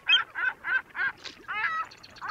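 A gull calling: a quick run of about six short, pitched calls over a second and a half.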